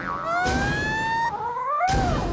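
A cartoon character's long, high vocal cry, rising steadily in pitch for about a second and then wavering up and down.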